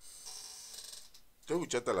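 A damaged desk chair creaking with a drawn-out squeak of about a second as the man shifts his weight in it. A man's voice starts near the end.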